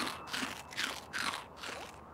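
Cartoon chewing sound effect: a character crunching a mouthful of cheesecake, about four crunchy bites a little under half a second apart, fading toward the end.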